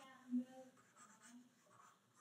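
Very quiet room tone with one short, faint voiced murmur about a third of a second in.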